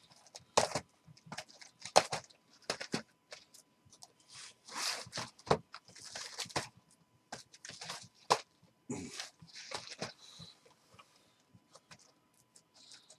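Cardboard hobby boxes being handled on a table: picked up, slid and set down, with irregular knocks, scrapes and rustles. A faint steady tone runs underneath.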